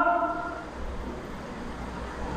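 A pause in a man's speech: the end of his last word dies away in the first half second, leaving a steady low background rumble.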